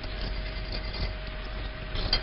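Steady hiss with a faint constant hum and a thin steady tone: the background noise of an old film soundtrack. No distinct event stands out.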